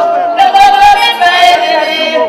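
Voices singing loudly over music, in long held high notes that break off and start again.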